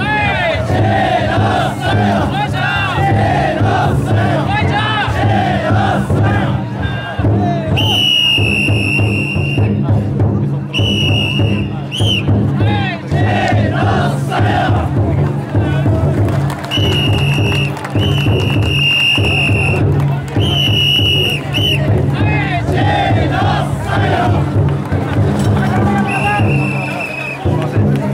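Bearers of a chousa drum float (taikodai) shouting chants together over the float's big drum, which is beaten steadily. A whistle cuts through in shrill long blasts several times, from about eight seconds in.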